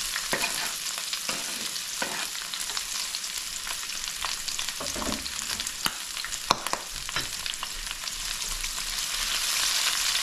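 Chopped onion, garlic and pepper sizzling in hot oil in an enamelled pan, a steady hiss with scattered sharp pops and clicks, the loudest about six and a half seconds in. Near the end a spatula stirs them and the sizzle grows a little louder.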